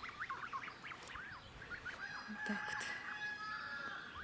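A flock of white domestic geese calling: many short, quick peeping calls, joined by one longer held call in the second half.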